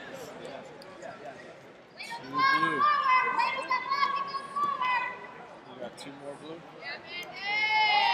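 Spectators or coaches shouting loudly in a wrestling arena as points are scored in the bout. There is one long, high-pitched yell held for about two and a half seconds starting about two seconds in, then another high yell near the end that rises and falls. A murmur of voices runs beneath.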